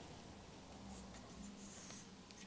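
Faint soft rubbing from plastic retinoscopy lens racks being handled, over a low steady hum.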